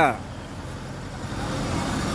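Small motor scooter running at low speed as it pulls up and stops beside the officers, mixed with a street traffic rumble that slowly grows louder.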